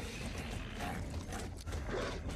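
Sound effects from a TV episode's soundtrack: a run of irregular clicks and knocks over a steady low hum, in a tense night scene.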